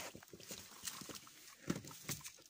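A dog eating treat sticks off icy ground: irregular small chewing and nosing noises, with one louder one near the end.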